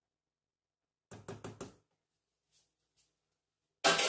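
A quick run of about four knocks, a spatula tapped against the rim of a stainless steel stockpot, then a louder clunk near the end as a kitchen item is handled or set down.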